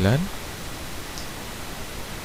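Steady hiss of a microphone's noise floor, with the tail of a man's spoken word at the very start.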